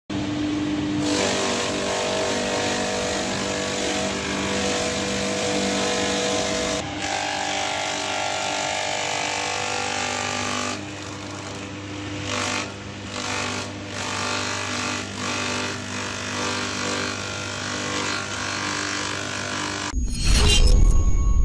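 Takyo TK1500 electric banana-trunk chopper running: its 2.2 kW single-phase motor hums steadily while the blades shred a banana stem being pushed in by hand. The level rises and falls unevenly in the second half as the stalk is fed into the blades.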